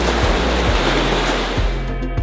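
Ocean surf breaking on a beach, heard under background music with a steady low beat; the surf drops away near the end, leaving the music alone.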